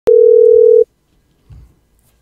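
A single loud telephone-line beep: one steady mid-pitched tone, a little under a second long, that cuts off sharply. A faint low thump follows about one and a half seconds in.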